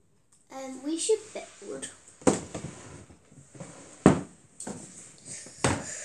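A child's voice briefly, then three sharp knocks with scraping and rattling between them as a drawer under a table is pulled open.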